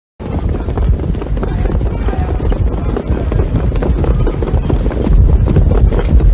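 Hooves of a field of standardbred trotters beating on the track at the start of a harness race, a dense rapid clatter over a steady low rumble.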